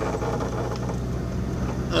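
Steady low drone of a car's engine and tyres heard from inside the cabin while driving along a street. Speech begins right at the end.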